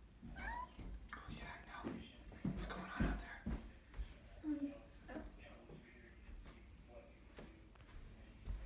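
Domestic cat giving short meows, one rising in pitch about half a second in and another, lower one a little after the middle. Soft knocks and rustling in the first half are the loudest sounds.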